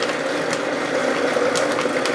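Countertop blender running at a steady speed, blending a liquid protein shake: an even motor whir with a hum that holds one pitch.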